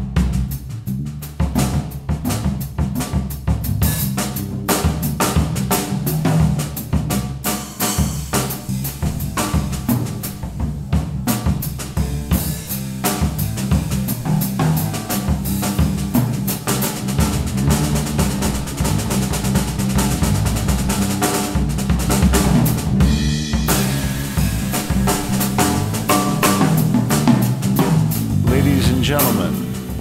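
A jazz trio playing: a Tama drum kit with quick, busy snare, bass drum and cymbal strokes over electric bass and grand piano.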